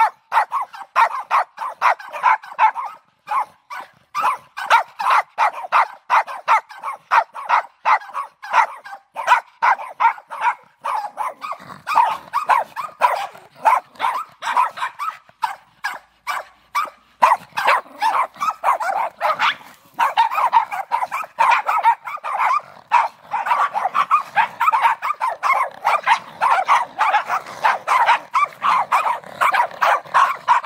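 Several dogs barking, short sharp barks a few per second without a break; from a little past halfway the barks of more dogs overlap into a dense chorus.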